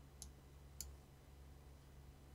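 Near silence: room tone with two faint, short clicks about half a second apart near the start.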